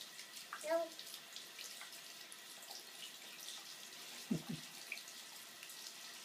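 Bathroom sink faucet running water into the basin, faint and steady. A child's short high vocal sound comes just under a second in.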